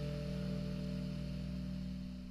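Jazz group's last chord ringing out, with guitar and double bass tones held and fading away steadily at the end of the piece.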